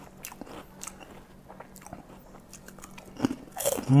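Close-up crunching and chewing of a kerupuk, an Indonesian fried cracker dipped in sambal, picked up by a clip-on microphone: a run of small crisp crunches, with a couple of louder ones near the end.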